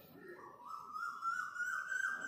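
A siren winding up in pitch about half a second in, then holding with a quick warble of about four wobbles a second.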